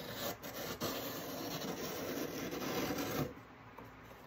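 Blade slitting the packing tape along the top of a cardboard shipping box: a steady scraping for about three seconds that stops a little before the end.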